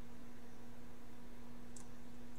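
A steady low hum with a constant hiss underneath, and one faint short click near the end.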